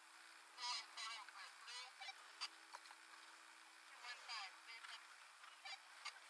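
Faint, scattered bird calls: short chirps and a few calls sliding down in pitch, over a low steady hum.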